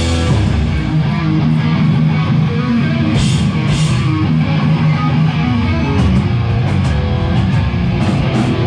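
Hardcore punk band playing live: electric guitar riffing over bass and a drum kit, with two cymbal crashes a few seconds in.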